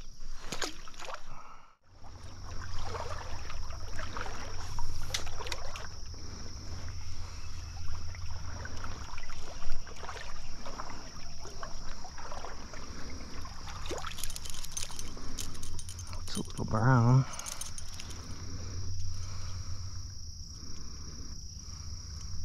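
Close-up splashing, clicks and rustling handling noise, with a steady high insect drone behind it. A man's voice gives a short hum or grunt about 17 seconds in.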